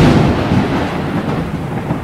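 A loud rumble of noise that starts suddenly and fades slowly over about two seconds.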